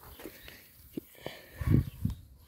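Soft footsteps and small knocks of someone moving on tilled garden soil, with a louder low thump near the end.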